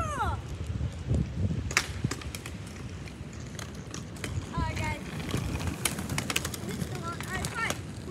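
Children's voices calling out during a street-hockey game, with sharp clacks of hockey sticks and ball on pavement: one about two seconds in and a quick run of them around six seconds. Wind rumbles on the microphone throughout.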